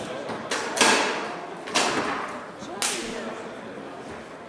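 Three sharp cracks of a foosball being struck hard by the rod figures and hitting the table, about a second apart, the first the loudest, each ringing on briefly in a large hall.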